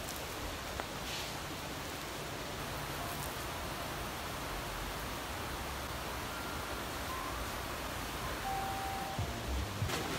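Steady low hiss of room noise, with a few faint brief rustles as fingers handle wet hair.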